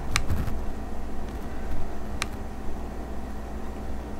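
A steady low hum, with two light clicks about two seconds apart as a small metal pistol, a Beretta 21A, is turned in the hands.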